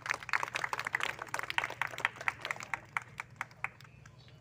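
Onlookers clapping: a short burst of applause of many irregular claps that thins out and fades just before the end.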